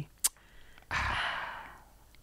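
A person's long, breathy sigh into a close microphone, starting about a second in and fading away over about a second, after a brief click.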